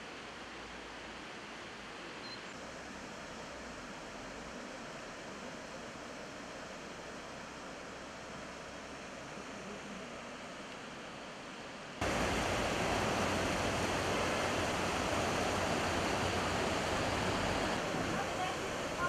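Steady rush of flowing river water, jumping suddenly much louder about twelve seconds in.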